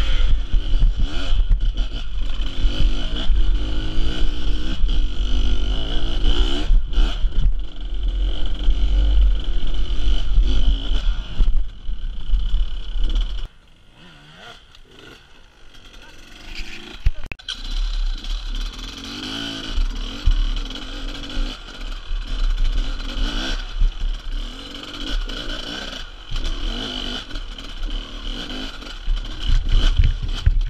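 Off-road dirt bike engines running and revving hard as the bikes climb over rocks and roots, heard through an on-bike camera with wind and rumble on the microphone. The sound drops suddenly to a quieter stretch about halfway through, then the engine noise picks up again.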